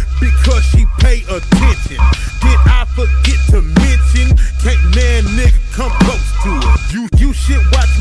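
Hip hop track with rapped vocals over a beat with heavy sub-bass. The bass cuts out briefly about seven seconds in.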